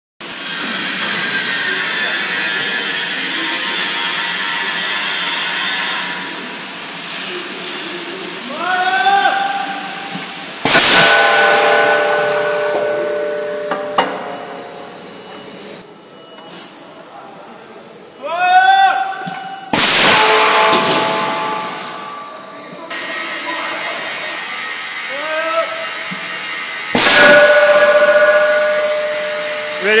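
Clansman CC1000 impact tool firing three blows against steel track-shoe castings, each a sharp bang followed by the casting ringing for two to three seconds. A steady hiss runs through the first six seconds.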